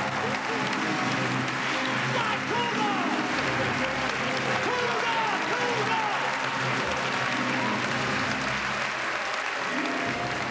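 Studio audience applauding steadily, with scattered shouts, over the show's band music.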